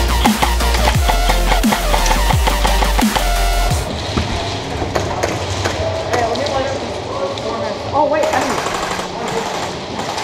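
Electronic dubstep-style music with a heavy bass and falling bass glides, cutting off abruptly about four seconds in. After that come field sounds: scattered voices and sharp clicks.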